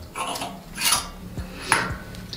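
Clothes hangers scraping and clicking along a metal clothes-rack rail as a jacket on its hanger is hooked back in among the others: three short scrapes, the last two the loudest.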